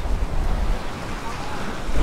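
Waves washing against jetty rocks, with wind rumbling on the microphone.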